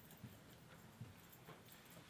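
Faint footsteps of cowboy boots on a brick floor: a few soft heel knocks over near silence.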